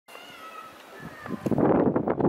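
Steam locomotive whistle: a faint pitched tone first, then a loud, rough, wavering blast starting just over a second in.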